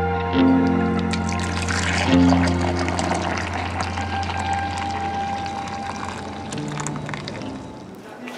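Background music with steady held notes, over frothed matcha latte being poured from a metal jug into a ceramic mug; the pouring runs from about a second in until near the end.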